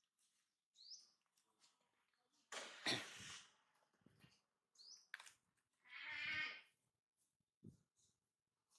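Long-tailed macaques calling: brief high rising squeaks about a second in and again about five seconds in, a loud rough cry around three seconds in, and a squealing call about six seconds in.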